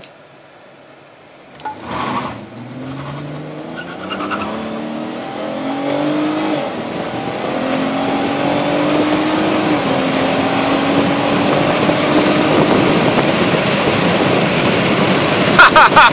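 Dodge Caravan minivan accelerating hard from a stop, heard from inside the cabin. The engine's pitch climbs and drops back at automatic upshifts about six and ten seconds in, while road and wind noise build steadily with speed.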